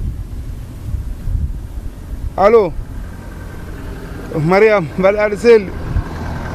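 A man laughing into a phone in three loud bursts near the end, after one short voiced sound about halfway through, over a low, uneven rumble.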